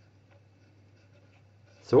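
Pen writing on squared paper: faint scratching strokes with small ticks as a line of an equation is written.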